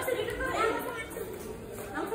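Indistinct voices chattering, with no clear words.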